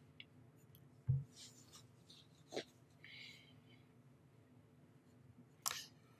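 A quiet room with a few faint, short noises: a soft low thump about a second in, then a small click, a faint hiss and another short noise near the end.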